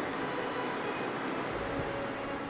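Steady hiss of background room noise with no distinct strokes, joined near the end by faint steady musical tones.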